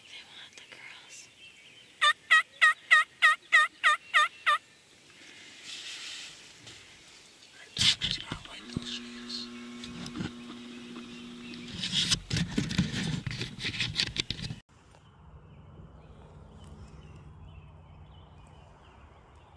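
Wild turkey yelping: a quick run of about ten evenly spaced yelps, each note dipping and rising in pitch, lasting a couple of seconds. Fainter clicks and rustling follow.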